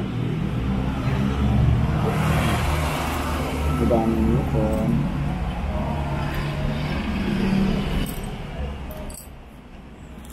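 A motor vehicle engine runs steadily, then fades away about eight seconds in.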